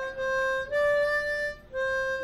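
Harmonica playing a slow melody of long held notes: one note, a step higher for about a second, then back down to the first.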